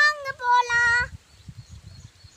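A young girl's voice speaking in long, drawn-out, sing-song vowels, stopping about a second in, followed by faint low rumbles on the microphone.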